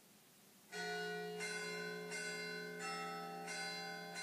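A peal of bells struck one after another, about one strike every 0.7 seconds, each a slightly different pitch and left ringing, starting under a second in.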